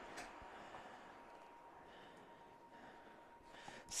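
Near silence: faint background hiss with a faint, steady high tone that fades out near the end.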